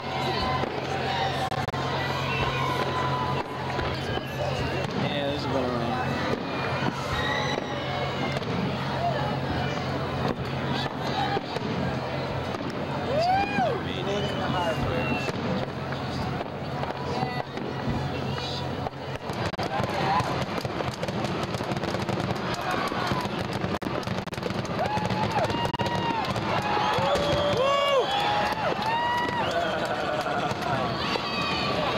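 Harbour fireworks display going off: repeated bangs and crackling, with people's voices around. A steady low hum runs under it and stops about two-thirds of the way through.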